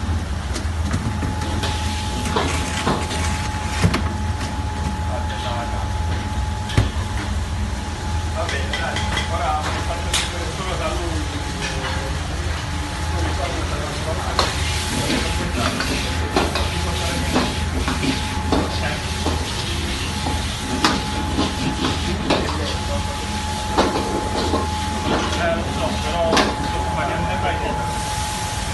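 Commercial kitchen noise: a steady low hum with a thin constant tone over it, scattered clatter and knocks of pans and utensils, and indistinct voices in the background.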